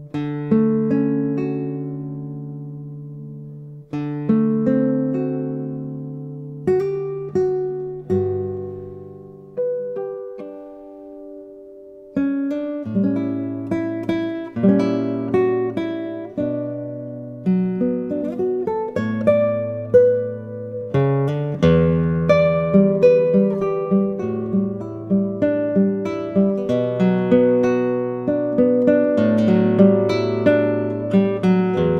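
Solo classical guitar, a 1939 Hermann Hauser I with spruce top and rosewood back and sides, played fingerstyle. It opens with slow, ringing chords left to decay, then about twelve seconds in settles into a steady flowing pattern of plucked notes over a bass line.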